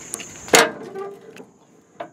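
Steel cam-lock latch on a dump trailer's rear swing gate being worked by hand: a few light clicks, then one loud metallic clank about half a second in, followed by a couple of smaller knocks.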